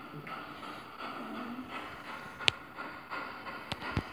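Low steady hiss, with one sharp click a little past halfway and a few fainter ticks near the end.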